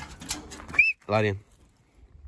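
A man's low voice calling a dog out, one drawn-out word about a second in, just after a brief high chirp-like whistle.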